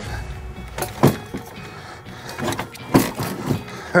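Metal clunks and scrapes from a Thule T2 Pro XTR hitch bike rack being worked into place on a pickup's hitch receiver, with two sharp knocks about one and three seconds in and a few lighter ones between, over background music.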